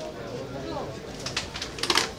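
Background voices of a busy open-air market, with a quick run of sharp clicks near the end that is the loudest sound.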